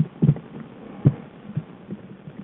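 A few muffled low thumps from a black bear moving about close to the den microphone, the loudest about a second in.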